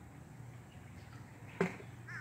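Faint, steady background with a single short click near the end.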